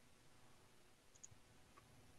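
Near silence: room tone with two faint quick clicks a little after a second in and another faint tick near the end.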